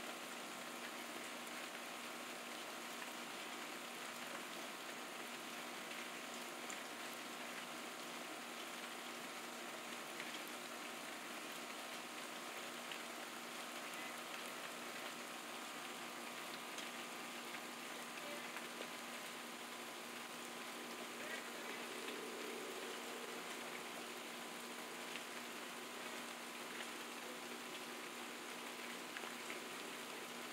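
Rain falling steadily, an even hiss with no breaks, over a faint steady hum.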